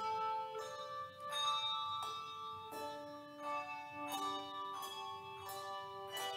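Handbell choir ringing a hymn arrangement: chords of bell notes struck every half second to a second, each note ringing on and overlapping the next.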